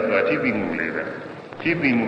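A man's voice delivering a Buddhist sermon in Burmese, with the pitch rising and falling. There is a brief lull about a second and a half in, then the voice picks up again.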